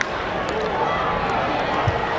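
Many people chattering at once in a ballpark crowd, with a sharp crack of a baseball bat hitting the ball right at the start.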